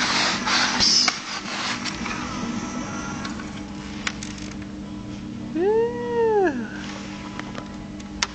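Scraping or rubbing on the floor that fades out about a second in, then a single drawn-out cat meow, rising and then falling in pitch, about six seconds in, over a steady low hum.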